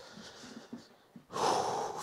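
A man's loud, noisy breath lasting under a second near the end, after a quiet stretch with faint low knocks.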